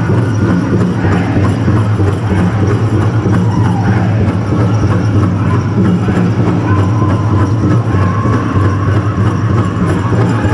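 Powwow drum group playing a fancy-dance song: a large drum struck in a fast, steady, unbroken beat, with high-pitched voices singing over it.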